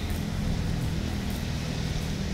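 Street traffic noise: a motor vehicle engine running with a steady low hum.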